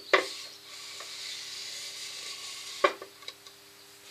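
Paper towel rustling as it is folded and worked in the hand, with a sharp click just after the start and another near the end, over a faint steady hum.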